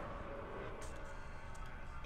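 Film soundtrack ambience: a low, steady rumble with a faint hum.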